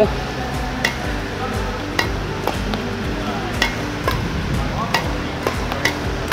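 Badminton racket strings tapping shuttlecocks in a repeated net-tap drill, a sharp click roughly once a second, over background music.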